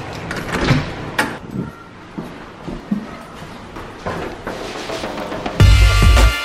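A run of clicks and knocks from a front door's deadbolt and knob latch as the door is unlocked and opened. Music with a heavy bass beat comes in suddenly near the end.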